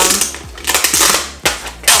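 Thin plastic wrapping crinkling and rustling as a new laptop is slid out of its protective sleeve, in three rough bursts.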